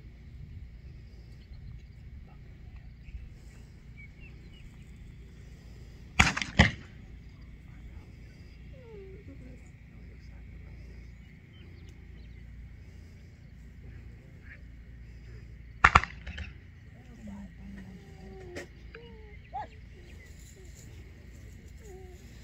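Shotgun shots fired by the gunners in a retriever field trial as birds are thrown for the dog to mark. There are two shots about half a second apart about six seconds in, and another quick pair about sixteen seconds in.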